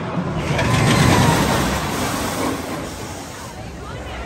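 StormRunner steel roller coaster train running along the track overhead: a rumble that swells about a second in and fades away.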